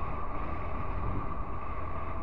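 Honda NC750X motorcycle cruising at a steady speed: its parallel-twin engine running evenly, mixed with wind and road noise on the bike-mounted camera.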